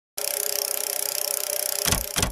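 Slot-machine reel-spin sound effect: a fast, even rattling whir of spinning reels, then a heavy thud near the end as the first reel stops.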